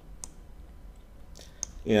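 A few faint, separate clicks at a computer, about three spread over two seconds, as the user works a web form.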